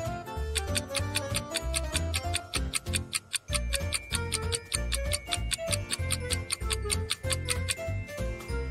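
Light background music with a steady, fast clock-like ticking laid over it: a countdown-timer sound effect.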